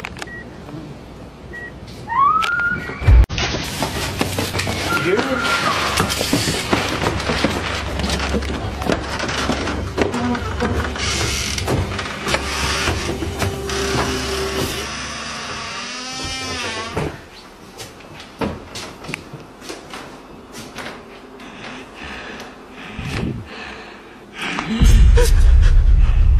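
Screaming from elsewhere in the house, starting with a rising cry about two seconds in and going on loudly for some twelve seconds, then trailing off into a wavering wail. This is followed by scattered bumps and footsteps as someone moves quickly through the house. Faint electronic beeps are heard at the start.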